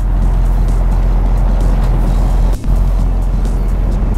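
Chevrolet Corvette C5's stock 5.7-litre LS1 V8 idling, heard close to its quad exhaust tips: a steady low sound, with a brief dropout about two and a half seconds in.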